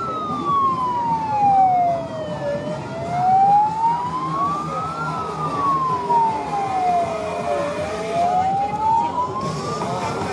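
A wailing siren, its pitch rising and falling slowly, about two and a half seconds up and two and a half down, over steady street and crowd noise.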